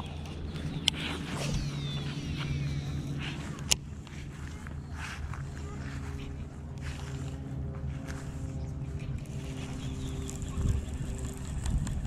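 Shimano SLX baitcasting reel being cast and retrieved. There is a sharp click about a second in, a thin whine falling in pitch as the spool pays out line, another click near four seconds, then cranking of the handle. A steady low hum runs underneath.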